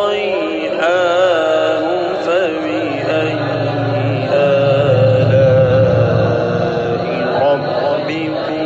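A male qari reciting the Quran in melodic tajweed style, drawing out long ornamented notes with a wavering, vibrato-like voice.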